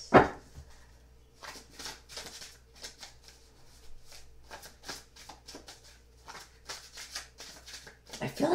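Tarot deck being shuffled by hand: one sharp, loud card slap at the start, then a run of soft, irregular card snaps, a few a second.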